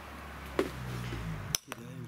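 A single sharp metallic clink about half a second in, from the removed water-pump parts being handled, over a low hum. A second short click comes near the end, and the sound then drops out suddenly.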